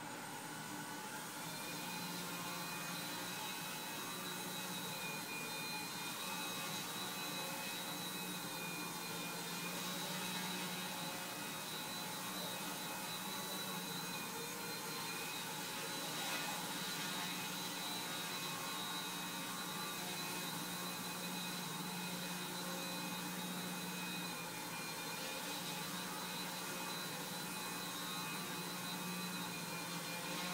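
Electric motors and propellers of a small remote-controlled half-sphere flying craft, running steadily in flight: a constant whir with a high whine that wavers slightly in pitch as the throttle changes.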